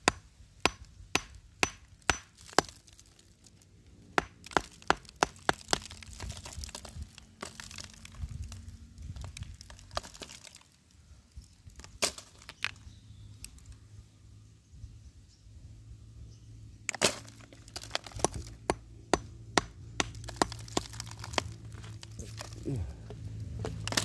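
A claw hammer tapping and chipping at a rock: sharp cracks in quick runs of strikes with pauses between, small pieces of stone breaking off.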